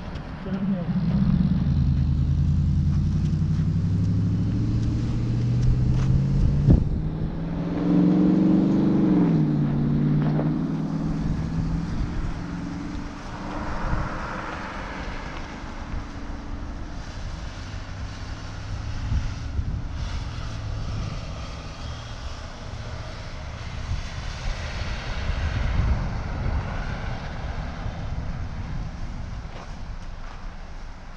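A pickup truck's engine pulling away and driving past close by, its pitch rising and falling over the first ten seconds or so, then fading into a fainter rushing road noise that swells twice.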